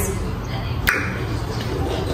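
A single sharp click about a second in, over low background noise.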